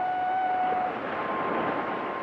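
A single sustained high note that stops and gives way to a higher held note about a second in, over a steady hiss.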